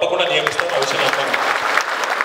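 Crowd applauding: a dense patter of many hands clapping that fills the pause in a speech and dies down near the end.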